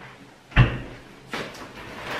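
A kitchen door swung shut with a single solid thump about half a second in, followed by a lighter knock a little under a second later.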